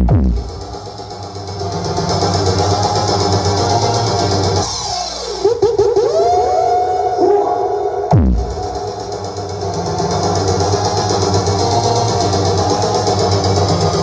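Electronic dance music played loud through a large stacked disco mobile sound system of PA speaker cabinets and horns, with heavy bass. A deep falling bass sweep hits at the start and again about eight seconds in, with sliding synth glides in between.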